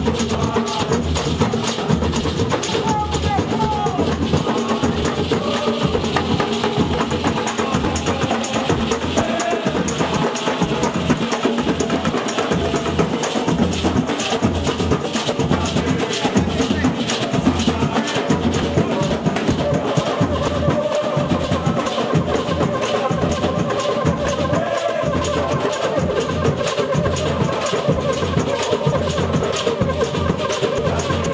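Batucada street percussion band playing a steady, fast samba beat on surdo bass drums and pandeiro frame drums. A strummed guitar-like string instrument and voices sound over the drums.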